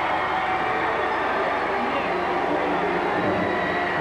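Large gymnasium crowd cheering and clapping steadily for a player's starting-lineup introduction, a dense wash of many voices and hands.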